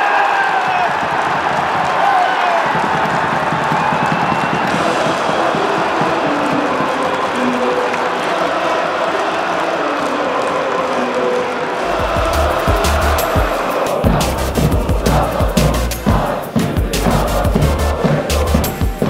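A stadium crowd roaring and singing. About twelve seconds in, a music track with a heavy, pounding bass beat comes in over it.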